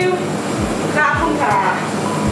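A woman's voice speaking briefly, with a steady background hum beneath it.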